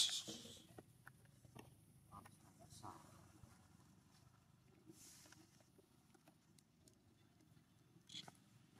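Mostly faint: soft scuffs and rustles of macaques moving over dry leaves on dirt ground, with a short, sharp, high-pitched sound right at the start that fades within about half a second.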